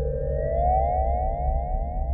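Synthesized sci-fi sound, a siren-like tone rising slowly in pitch, its several layers sweeping past one another, over a low steady hum.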